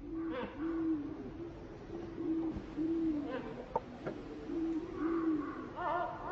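A bird's low hooting calls: a series of short, level hoots with brief gaps between them, each dipping slightly at its end. A few thin, falling calls sound faintly above them.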